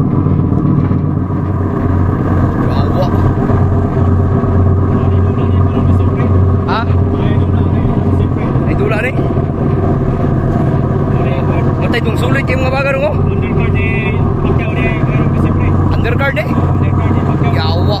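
A ship's diesel engine running steadily underway, a constant loud drone with a strong low hum, with short bits of voices over it.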